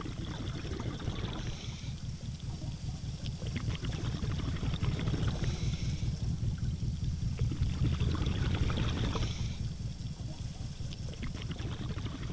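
Underwater sound of a scuba diver: a steady low rumble full of bubble crackle, with a hissing swell of exhaled regulator bubbles every few seconds.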